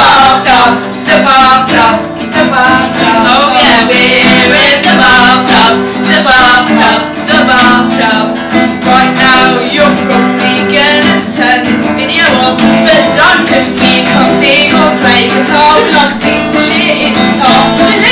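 Nylon-string acoustic guitar and electric guitar playing a song together, with strummed chords.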